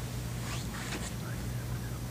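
Room tone with a steady low hum, broken by a few faint, brief soft noises about half a second and a second in.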